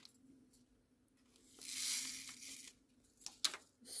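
Small plastic bags of diamond-painting drills crinkling as they are handled: one rustle of about a second in the middle, then a couple of light clicks.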